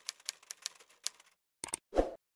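Typing sound effect: a quick run of keystroke clicks, about five a second, then after a short pause a few louder clicks near the end, the last one the loudest.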